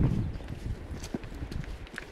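Footsteps on a rocky dirt trail: irregular steps with scattered sharp clicks and knocks of shoes on stones. A low rumble fades out in the first half second.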